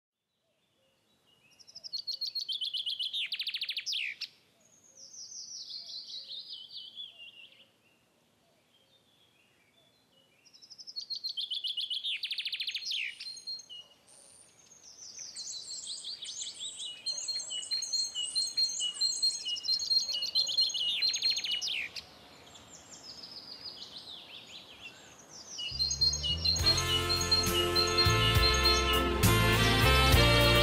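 A songbird singing several phrases of quick, falling trills with pauses between them. Near the end, the music of a slow Marian hymn comes in.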